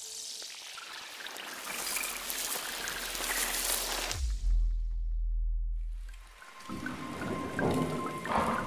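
Logo-intro sound design: a swelling hiss builds for about four seconds, then a deep bass hit slides down in pitch and holds for about two seconds. A splashy, crackling texture with a few light chime-like tones follows near the end.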